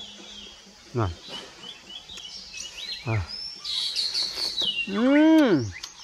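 Small birds chirping repeatedly in the background. A man makes short grunts and then a loud, drawn-out 'mmm' near the end.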